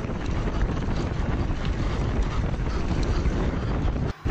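Wind rushing over a cyclist's action-camera microphone while riding a mountain bike across grass: a steady, rumbling noise with a few faint ticks through it.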